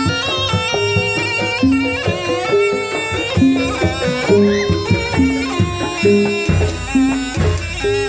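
Jaranan Buto gamelan accompaniment: a shrill reed wind instrument plays a wavering melody over a repeating pattern of drums and gongs. Heavy bass-drum strokes come in about six and a half seconds in.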